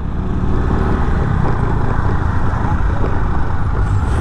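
Steady riding noise on a moving TVS Jupiter scooter: its 110 cc single-cylinder engine running under a low rumble of wind and road noise on the microphone.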